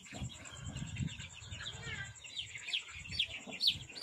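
Young chicks peeping: a scattered series of short, high chirps, each falling in pitch, several in the later half.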